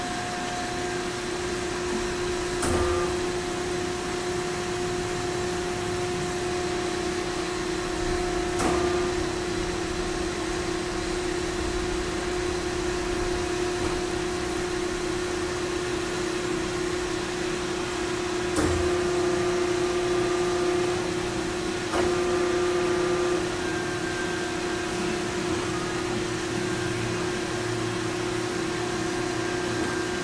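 Hydraulic drive of a FAMAR four-roll plate bending machine running under automatic CNC control, a steady hum. Four short clicks are spread through it as the rolls move from one program step to the next.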